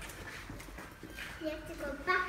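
A young child's high-pitched voice, starting a little over a second in, over faint room noise.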